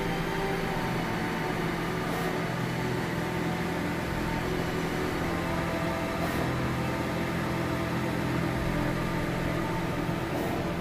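Skyjet 512 large-format flex banner printer with Konica print heads running while it prints: a steady mechanical hum of its motors and cooling fans.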